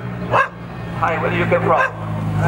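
Ferrari 458 Speciale's V8 running at low revs as the car rolls slowly past, a steady low hum. Voices over it, with a short sharp yelp about half a second in.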